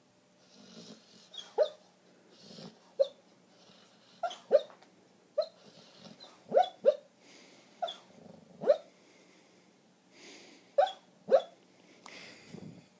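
A border collie barking in her sleep during a nightmare: about a dozen short, sharp yips, several in quick pairs, with soft breathy huffs between them.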